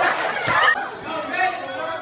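Several people talking and calling out over one another, with one short sharp hit about half a second in.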